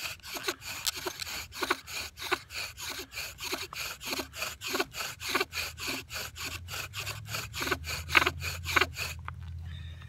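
Bow drill strokes: a yucca spindle rasping back and forth in a yucca hearth board under heavy pressure, about three to four strokes a second, stopping about nine seconds in. This is the burn-in stage, seating the spindle into the hearth before an ember can form.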